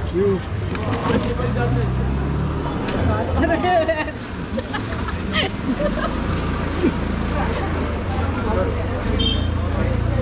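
Background chatter of several people talking at once, over a steady low rumble.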